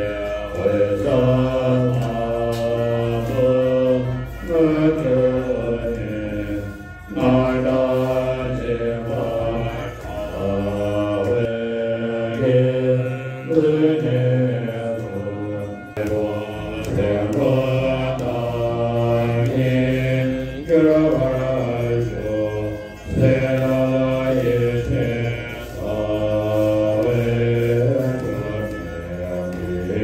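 Melodic Buddhist mantra chanting, sung in phrases a few seconds long with long held notes.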